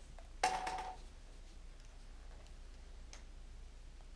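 A lottery ball dropped into a clear tube clacks onto the stack of balls about half a second in, with a short hollow ring. A fainter click follows near the end, over a steady low room hum.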